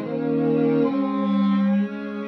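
A string trio of violin, viola and cello playing long, sustained bowed chords together; the chord changes about a second in and again near the end.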